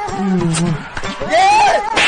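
A person's voice making drawn-out, wordless cries. The loudest cry, about a second and a half in, rises and falls in pitch.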